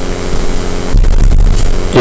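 A low steady hum with many evenly spaced tones, swelling into a louder low rumble about halfway through.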